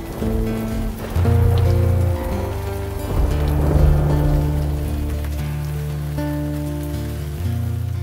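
Heavy rain sound effect under instrumental music with slow, held notes and a steady low bass.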